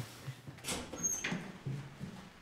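Footsteps along a corridor floor, soft low thuds about two a second, with a brief high squeak about a second in.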